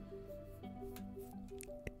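Quiet background music of short, evenly repeated notes at a few pitches, with a brief click just before the end.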